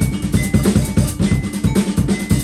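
Live band music: a vibraphone struck with mallets, its notes ringing, over a drum kit keeping a steady beat and a low bass line.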